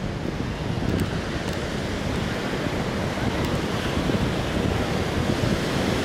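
Ocean surf breaking on a sandy beach, mixed with wind buffeting the microphone: a steady, rumbling wash of noise.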